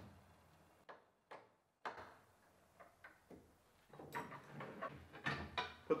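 Faint, sparse metal clicks of hardware being handled, then from about four seconds in a busier run of knocks and clatter as a long aluminium extrusion rail is picked up.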